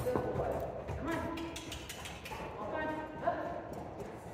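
A horse's hoofbeats on the soft dirt footing of an indoor arena as it canters circles on a lunge line. Two short pitched sounds, like brief calls, come about a second in and again near three seconds.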